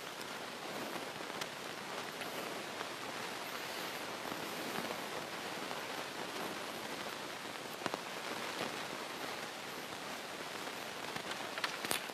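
Steady, even background hiss, with a faint click about a second in and another near eight seconds.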